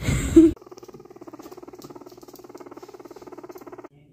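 A brief loud rustle of handling, then a guinea pig purring: a rapid, even pulsing at one steady pitch for about three seconds that stops abruptly near the end.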